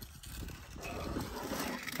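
Faint whir and rolling of a Jazzy power wheelchair's drive motors and wheels as it climbs from concrete onto a wooden ramp at low speed, growing a little louder about half a second in.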